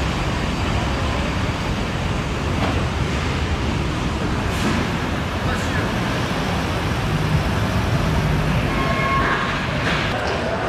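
Steady hall noise at an indoor car show: a low rumble under indistinct crowd voices, with a few clearer voice fragments near the end.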